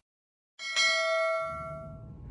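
A bright bell-like notification ding, the chime of a subscribe-button animation, struck about half a second in with a second strike just after, then ringing down over the next second.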